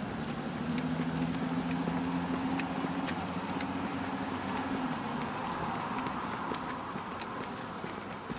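City road traffic: a steady rush of passing vehicles, with a motor vehicle's low engine drone through the first five seconds or so. Footsteps on the pavement tick about once or twice a second.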